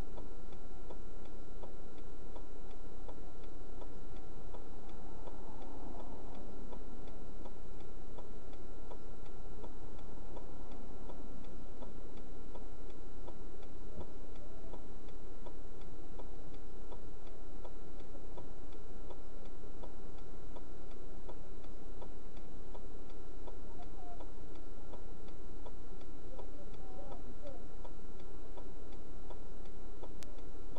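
A car's flasher relay ticking steadily inside the cabin.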